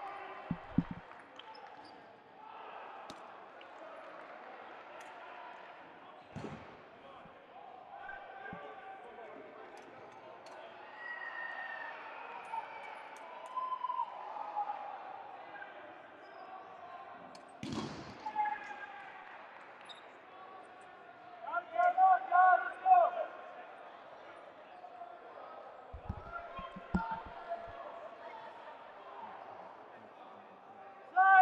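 Dodgeballs bouncing on a hardwood gym floor: single thumps now and then and a quick run of bounces near the end, under players' voices echoing in the hall, loudest as calls about two-thirds of the way through.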